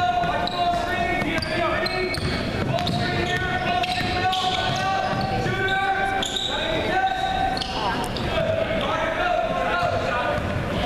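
A basketball dribbled on a hardwood gym court, its bounces heard among steady, indistinct shouting and chatter from players and spectators, echoing in the large gym.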